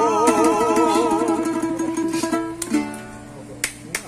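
Men's voices singing the last held note of a song with wide vibrato over fast strumming on a small acoustic guitar. The voices stop about a second in, and the strumming ends on a final chord that rings out and fades: the close of the song.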